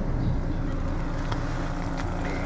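Steady low drone of an idling vehicle engine.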